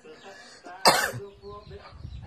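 A person coughs once, sharply, just under a second in, among quiet voices.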